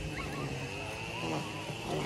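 Faint distant voices of several boys talking, over a steady high-pitched buzz.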